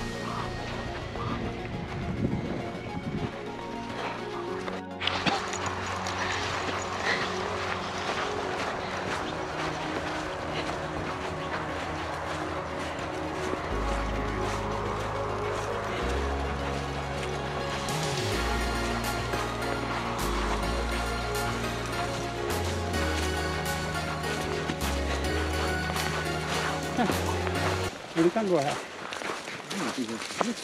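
Background music, with a deep bass line that comes in about halfway through and moves note by note every second or two.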